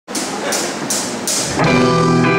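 A live rock band starts a song: four evenly spaced cymbal hits, about three a second, over a ringing wash. About one and a half seconds in, the distorted electric guitars and bass come in together on a sustained chord.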